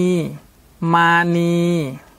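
A man's voice slowly reading aloud Thai syllables from a children's primer, ending one syllable and then saying the word มานี (Mani). Each syllable is drawn out at a steady pitch and falls at its end, with a short pause between them.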